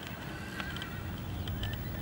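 A horse moving under a rider in a sand arena: hoofbeats in the sand as a low rumble. A thin, wavering high-pitched call sounds through the first second and again briefly near the end.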